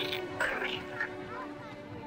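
Film soundtrack: sustained music notes that fade out early on, with a few short voice-like sounds about half a second and one second in.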